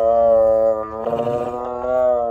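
Tiger calling: two long, steady calls, broken briefly about a second in.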